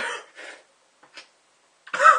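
A man breathing hard in short bursts through the burn of a super-hot chili, with a cough starting near the end.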